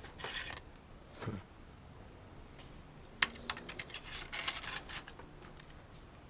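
Hands handling old plastic-and-metal electronics units among plastic bin bags: scattered clicks, knocks and scrapes with brief rustling, and one sharp click about three seconds in.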